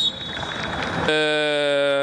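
A noisy hiss for about a second, then a steady, flat horn-like drone with a low, buzzy pitch that holds without change to the end.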